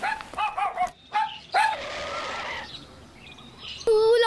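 A dog giving several short yelping barks in the first second and a half, followed by about a second of rushing noise.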